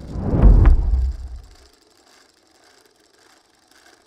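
A deep, low boom from the title graphic's sound effect, swelling in and dying away within about a second and a half. A faint crackly hiss follows.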